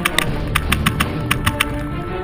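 Tippmann X7 Phenom paintball marker firing a quick, uneven string of about nine sharp shots that stop about one and a half seconds in, over background music.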